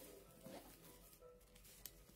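Near silence: faint handling of plastic-wrapped books being slid into place on a wooden shelf, with a small tap near the end.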